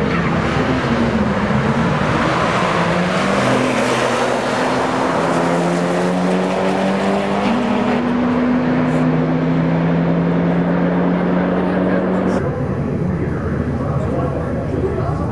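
Two cars accelerating hard down a drag strip, their engine notes climbing and stepping back down as they shift up through the gears. The sound stops abruptly near the end.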